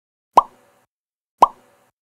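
Two short cartoon-style pop sound effects about a second apart, each a quick sharp pop with a brief fading tail, as animated title captions appear.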